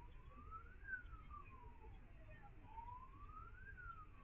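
Faint emergency-vehicle siren wailing, one tone sliding slowly up and down, rising for about a second and falling for about a second and a half, with two peaks in the span.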